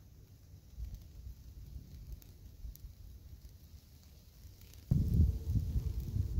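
Low rumble of wind on an outdoor microphone, faint at first, then suddenly much louder about five seconds in.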